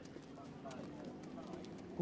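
Faint voices in the distance, with scattered light clicks.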